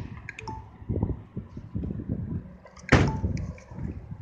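Low knocks and thumps of handling, then one loud slam about three seconds in: the trunk lid of a 2015 Honda Accord being shut.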